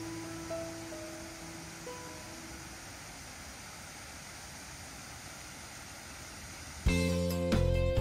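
Soft background music with a few gentle sustained notes fades out over the first two seconds or so, leaving a steady, quieter rushing noise. About a second before the end, a loud, busier music track starts abruptly.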